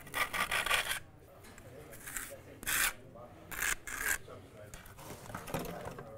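A trowel scraping adhesive, likely while cleaning or reworking it on the back of a thin veneer brick: a longer scraping stroke in the first second, then several short scrapes around the second, third and fourth seconds.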